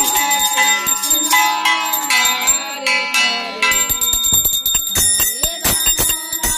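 A puja hand bell ringing continuously over voices singing a devotional song. From about four seconds in, the singing gives way to sharp, quick metallic strikes, several a second, under the bell.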